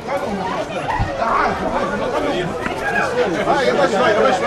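Several people talking over one another at once, an unbroken jumble of voices with no single speaker standing out.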